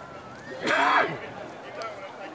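A person's loud shout, about half a second long and falling in pitch at the end, over faint voices from around the field.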